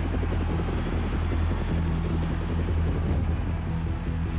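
Helicopter rotor chopping in a fast, even beat with a deep steady hum, as a cartoon sound effect over background music.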